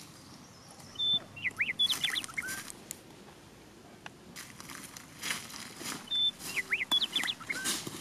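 Bird calls: a brief high note followed by a quick run of chirping glides with rustling, heard twice, the second burst an identical repeat about five seconds after the first.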